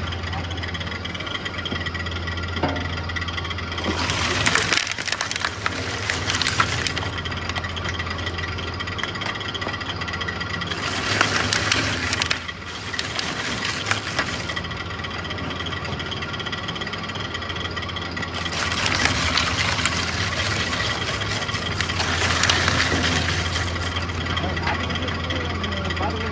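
Twin-shaft rubber tire cord fabric shredder running with a steady low hum from its drive. Three louder, noisier stretches break in (near the start, around the middle and later on) as rubber cord fabric passes through the rotary cutters.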